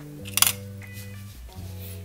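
Background music of steady low notes, with one brief sharp handling noise about half a second in as the crocheted piece is handled on the table.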